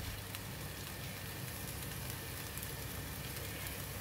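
Stir-fried egg noodles sizzling steadily in a hot wok.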